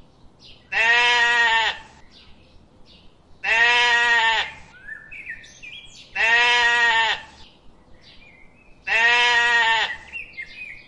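A goat bleating four times, each call about a second long and evenly spaced. Small birds chirp faintly between the bleats.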